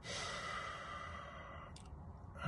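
A man's long sigh out through the mouth, lasting about a second and a half, followed near the end by a short mouth click.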